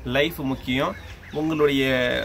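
A man talking, with no other sound standing out.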